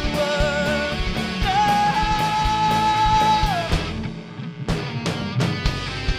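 Live rock band playing: distorted electric guitars, bass guitar and drum kit, with a long held high note in the middle. The band thins out briefly about four seconds in, then the drums come back in.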